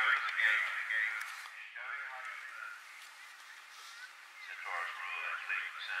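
Speech: course commentary calling riders over a radio, thin and lacking low end, with a quieter lull in the middle.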